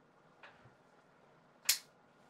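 Titanium-handled flipper folding knife, a Chinese copy of the Shirogorov Neon, flipped open on its ball-bearing pivot. A faint tick comes about half a second in, then one sharp metallic snap near the end as the blade swings out and locks open.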